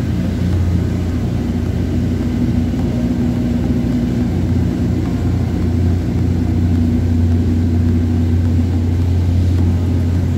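A cruise boat's engine running steadily under way, a low drone with a constant hum, over the rush of water from the wake.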